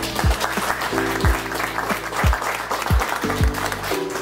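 A small group of people applauding over background music with a steady, slow beat; the clapping starts at once and eases off near the end.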